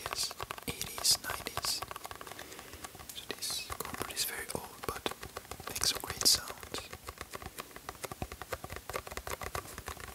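A sponge squished close to the microphone: dense crackling clicks, with short hissing swishes about seven times.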